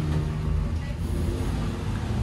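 Steady low rumble of a city bus in motion, engine and road noise heard from inside the cabin.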